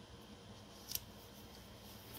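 One short, crisp snap of sticker paper about a second in, as a floral planner sticker is handled and pressed onto a paper planner page.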